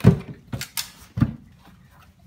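A pit bull licking a man's bald head: a few short, sharp licking sounds, the loudest right at the start and the last just after a second in.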